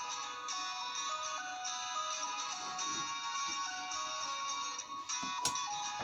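Background music: a melody of held notes stepping up and down over a sustained backing. A single sharp click sounds about five and a half seconds in.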